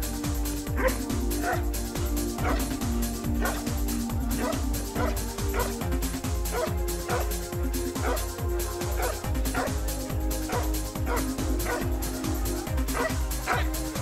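Belgian Malinois barking steadily at the decoy, roughly two barks a second. This is the guarding bark of the protection routine, given while the dog holds the helper in place without biting. Electronic music with a steady thumping beat plays under it.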